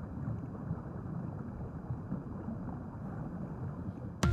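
Steady low rumble and wash of moving water heard underwater, with no clear events, only an even churning murmur.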